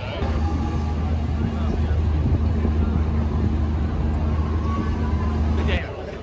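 A steady low motor hum over the chatter of a crowd on a busy street; the hum cuts off abruptly shortly before the end.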